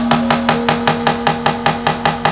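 Rapid, even knocking of a wayang puppeteer's cempala and keprak, the wooden knocker striking the metal plates hung on the puppet chest, about six strokes a second. Under it sounds a steady held low note.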